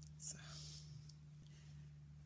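A woman's soft, breathy whisper-like vocal sound lasting about half a second, preceded by a short click, over a steady low hum.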